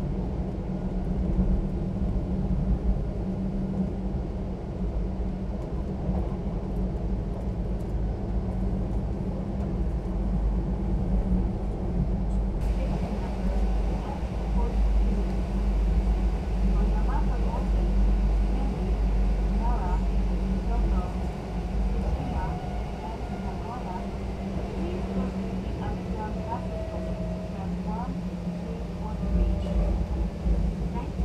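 Steady low rumble of the Kintetsu 'Blue Symphony' electric train running along the line, heard inside the passenger cabin. From about halfway through, faint indistinct voices rise and fall over the rumble.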